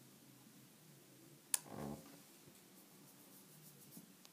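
Quiet handling of a small plastic cosmetic pot while loose powder is swatched onto the back of a hand: one sharp click about a second and a half in, a brief soft rub just after it, and a few faint ticks near the end.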